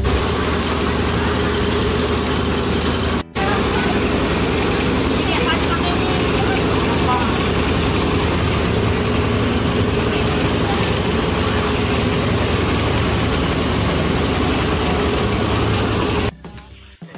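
The engine of an open-sided passenger carriage with wooden benches, running steadily with a low hum under a constant wash of noise. The sound drops out for an instant about three seconds in.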